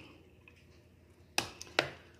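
Near-silent room tone, then two short sharp clicks about half a second apart near the end.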